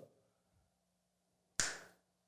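Near silence with a faint steady hum. About one and a half seconds in comes a single short, sharp, hiss-like sound that fades quickly.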